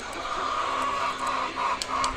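Caged white laying hens calling, a steady chorus of clucks with a few louder calls in the second half.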